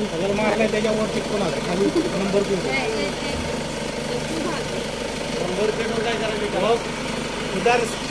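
A Mahindra SUV's engine idling steadily with the bonnet open, under the murmur of people talking close by.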